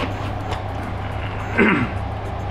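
Steady hum and whir of server cooling fans. A man clears his throat near the end.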